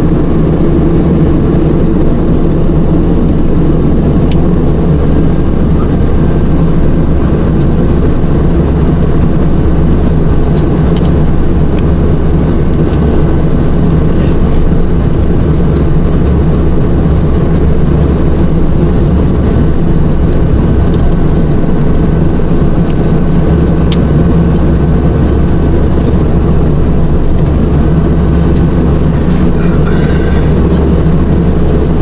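Steady, loud drone of a Beechcraft King Air's twin turboprop engines and propellers in flight, heard from inside the cockpit, with a faint high whine held steady above the low hum.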